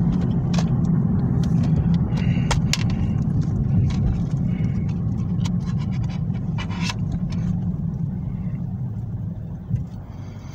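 Steady low car-cabin rumble that eases off near the end. Over it come scattered sharp clicks and scrapes as a plastic DVD case is handled, opened and a disc lifted off its hub.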